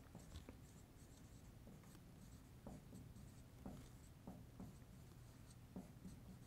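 Faint strokes of a dry-erase marker on a whiteboard as a word is written: short, irregular scratches and taps.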